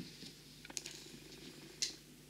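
Light clicks from hand work on a diamond painting canvas: a few faint ticks about three-quarters of a second in, and one sharper click near the end.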